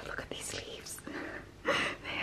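A woman's soft, whispered, breathy vocal sounds, with a louder breathy sound a little before the end.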